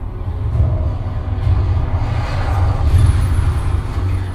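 Film trailer soundtrack played through a Creative SXFI Carrier Dolby Atmos soundbar and its subwoofer and recorded binaurally in the room: music and effects over a deep bass rumble, swelling to a peak about three seconds in and then easing.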